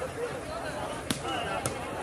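Crowd voices in the background with two sharp smacks of a volleyball being struck, the first and louder about a second in and the second about half a second later.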